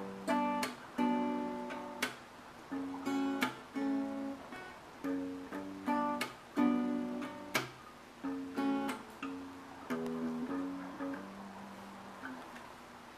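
Solo steel-string acoustic guitar playing a strummed and picked chord pattern without vocals, closing on a final chord that is left to ring and fade near the end.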